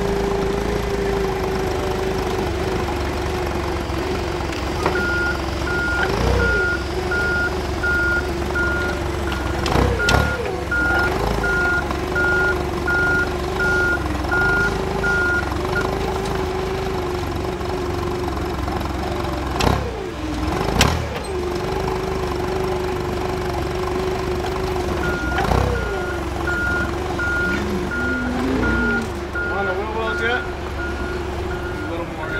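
Propane-powered Toyota forklift running steadily, its engine rising briefly in pitch several times as it works the pallet into the pickup bed. Its reversing alarm beeps about twice a second for stretches while it backs up, and a few sharp clanks come from the forks and load.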